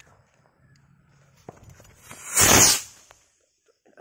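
A kwitis skyrocket of the red long loaded kind launching. About two seconds in its motor gives a loud rushing whoosh that swells and fades within a second as it takes off fast. A single sharp click comes just before.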